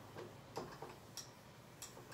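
Whiteboard eraser rubbed across the board in several short strokes, heard as a few faint, irregular scuffs and ticks.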